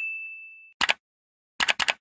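Sound effects for an animated subscribe reminder: a single bell-like ding that rings and fades away within the first second. It is followed by one short click, then three quick clicks near the end as the on-screen icons pop in.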